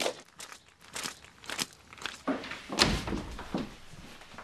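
Irregular footsteps and knocks, with a heavier thud about three seconds in.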